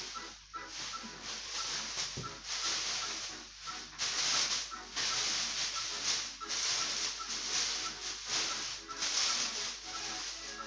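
Plastic wrapping rustling and crinkling in repeated swells as artificial Christmas tree branches are handled and pulled from their bag, over background music with a light ticking beat.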